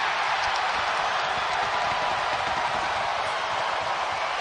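Arena crowd cheering steadily after a goal in an ice hockey game.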